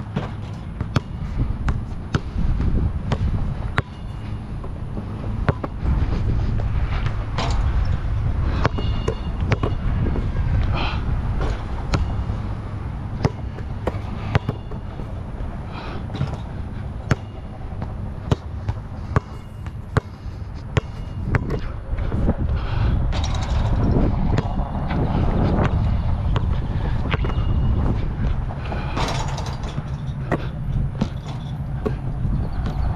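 Wind buffeting the head-mounted camera's microphone in a steady low rumble, with a Voit Super Dunk basketball bouncing on the hard outdoor court and striking the hoop in scattered sharp knocks.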